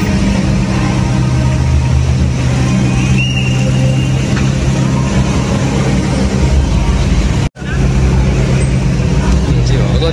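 Ferrari sports-car engines idling with a steady low drone, under the chatter of a crowd. The sound drops out for a split second about seven and a half seconds in.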